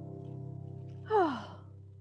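The last chord of an acoustic guitar and grand piano ringing and slowly fading. About a second in, a person lets out a loud sigh that falls in pitch.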